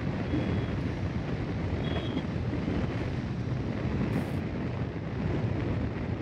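Motorcycle being ridden at about 60 km/h: a steady rumble of engine, tyre and wind noise buffeting the microphone.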